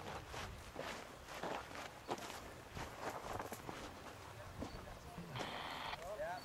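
Irregular footsteps on dry dirt and gravel, with a short hiss near the end.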